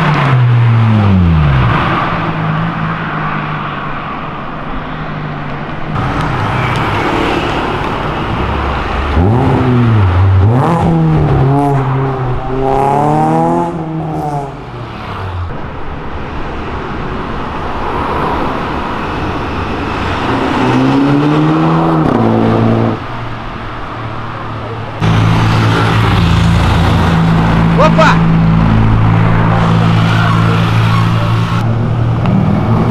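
Cars accelerating hard along a city street one after another. An engine note falls away as a car passes, then around the middle a car's note climbs in several stepped rises as it pulls through the gears, and another rises a few seconds later. Near the end comes a steady, even engine drone.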